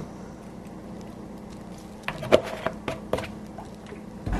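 Kitchen room tone with a low steady hum, then a short run of light clicks and knocks about two seconds in as a plastic jug of cooking oil is handled over a glass mixing bowl.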